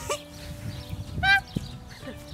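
A person laughing, with a short, high-pitched squeal of laughter a little over a second in, the loudest moment.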